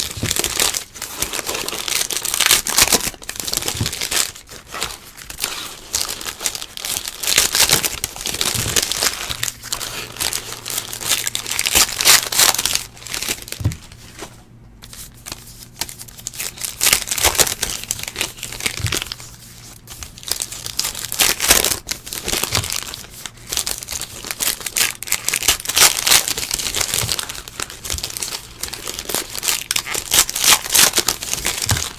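Foil wrappers of 2018 Panini Classics football card packs being torn open and crinkled by hand, with cards pulled out and handled. The crackling comes in irregular spurts, with a couple of brief lulls around the middle.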